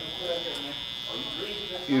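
Silver cordless hair trimmer running with a steady high-pitched buzz as it trims hair at the back of a man's neck.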